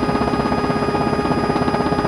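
Cabin noise of an Mi-17 helicopter in flight: its twin TV3-117 turboshaft engines and rotors giving a steady whine and rumble with a fast, even pulsing.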